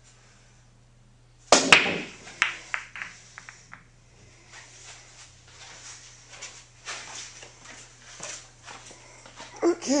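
Pool break: the cue ball hits the racked balls about one and a half seconds in with a loud crack, followed by a rapid clatter of ball-on-ball clicks over the next two seconds. Scattered softer knocks follow as the balls roll and strike each other and the cushions.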